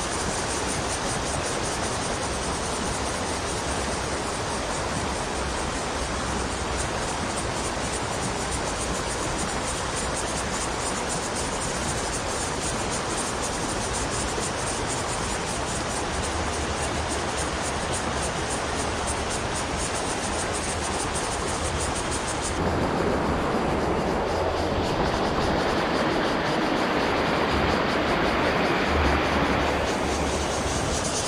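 Steady rush of flowing river water. About three-quarters of the way through it becomes fuller and deeper.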